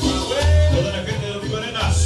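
Cumbia music played loud over a sonidero's dance-hall sound system, with heavy bass notes and a melody line over the beat.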